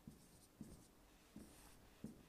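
Faint taps and short strokes of a pen on an interactive touchscreen board as numbers are written by hand.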